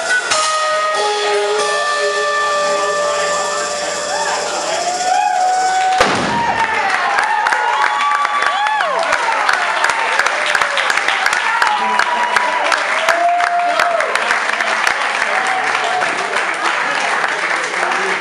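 A live jazz band holds its final chord, which ends in one sharp closing hit about six seconds in. Audience applause and cheering follow, which fits the end of a song.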